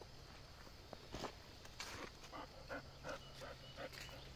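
Faint outdoor ambience with a run of short animal calls, about three a second, in the second half, after two brief sounds in the first half.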